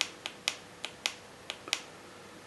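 Seven quick, sharp clicks at uneven intervals: the menu buttons of a Turnigy 9XR radio-control transmitter being pressed repeatedly to scroll through a list of options.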